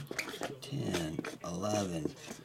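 A man's voice speaking in two short phrases.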